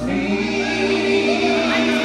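Live band music: a female vocalist singing a long held note over acoustic guitar and bass guitar.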